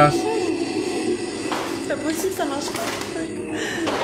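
Speech from the played video: a voice talking quietly over a faint, steady background music bed.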